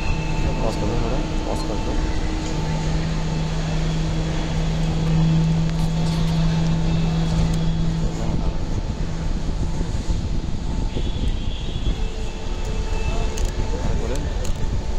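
Busy airport terminal entrance ambience: a steady low engine-like hum that strengthens a few seconds in and fades out past the middle, over a haze of background chatter and crowd noise.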